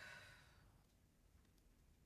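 A woman's short sigh in the first moment, then near silence.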